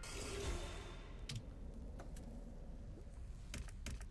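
A few faint, sharp clicks over a low, steady background hum: one just over a second in, another at about two seconds, and a quick cluster near the end.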